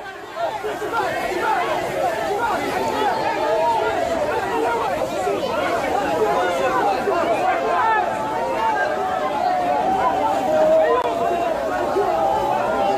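A large crowd of ultras supporters chanting and shouting together, many voices overlapping continuously.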